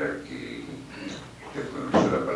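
Speech: a person talking, in short phrases with a brief pause.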